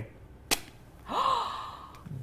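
A single sharp click about half a second in, then a short gasp-like voice sound that fades away.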